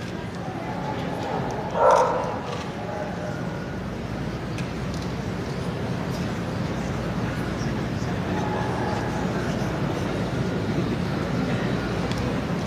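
A dog barks once, short and sharp, about two seconds in, over the steady murmur of an arena audience.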